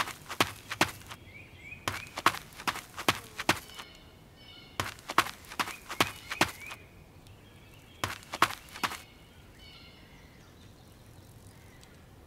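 Footstep sound effects: quick runs of sharp taps in four bursts of about a second each, with faint high chirps in the gaps.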